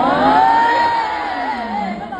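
High-pitched voices giving a drawn-out teasing "ooh" that rises, holds, then wavers before it ends.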